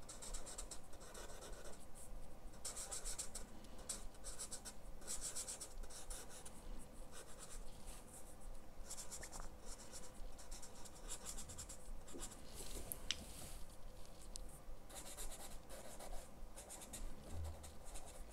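Arrtx alcohol marker tip stroking and dabbing on paper in many short, irregular strokes as small flower petals are drawn. The scratching is faint.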